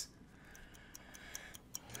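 Faint, regular ticking, about four ticks a second, like a clock.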